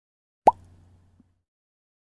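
A single short pop sound effect about half a second in, with a quick falling pitch, fading out within about half a second. It marks the click of an animated like button.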